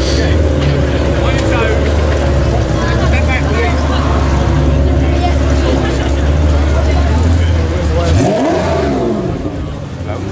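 Pagani Zonda's V12 running at a low, steady idle while the car creeps along, then a quick rev that rises in pitch about eight seconds in, after which the deep engine note drops away. Crowd chatter runs underneath.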